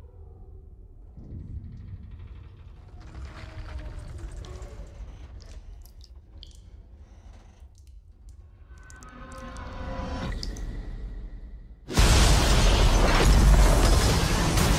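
Film sound effects of a deep-sea station giving way: a low rumble with faint metallic creaks and ticks, then about twelve seconds in a sudden, very loud crash of shattering and breaking that stays loud.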